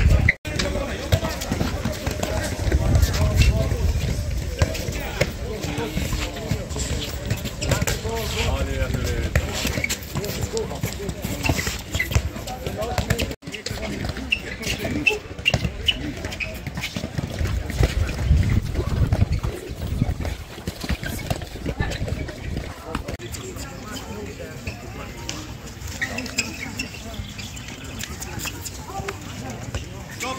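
Players' voices on an outdoor handball court, with many short knocks and slaps of handballs being caught, thrown and bounced, and gusts of wind on the microphone. The sound drops out briefly twice, near the start and about halfway.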